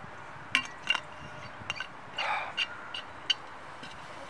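Insulated metal water bottle clinking and clicking as it is handled: a string of short, sharp, ringing clinks with a brief rattling cluster about two seconds in.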